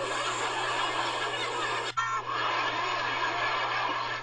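Laughter amid dense crowd-like noise, heard as a television soundtrack picked up in the room. It drops out for an instant at an abrupt edit about halfway through, then goes on much the same.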